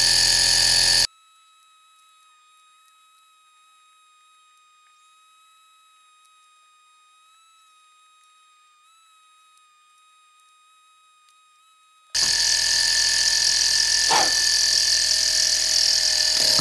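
Stirling model engine running, a fast high-pitched mechanical whirring rattle, its joints making extra mechanical noise that may call for oil. About a second in the running sound drops out, leaving only a faint steady high tone for about eleven seconds, then the engine's whirring returns.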